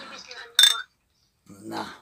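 Two stemmed wine glasses clinked together once in a toast: a single short, bright ring that cuts off abruptly.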